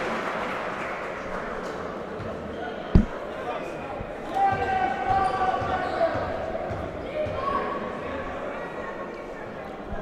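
Basketball arena ambience during free throws: crowd voices echoing in a large hall, with one sharp basketball bounce on the court about three seconds in.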